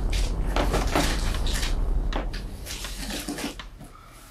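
Cardboard boxes being handled and opened: repeated scuffs, rustles and light knocks of cardboard, over a low rumble that fades out about halfway through.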